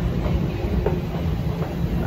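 Toronto subway train in the station, a steady low rumble with a few faint clicks.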